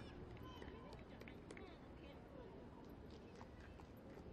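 Near silence: faint broadcast ambience of the pitch, with faint distant voices calling.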